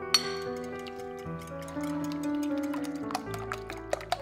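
Soft background music with a wire whisk clicking rapidly against a glass bowl as eggs are beaten. The clicks grow quicker and denser from about halfway through.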